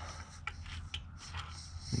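A few faint, short metallic clicks, about half a second apart, from a spark plug socket and extension knocking against engine parts as a loosened spark plug is lifted out, over a low steady hum.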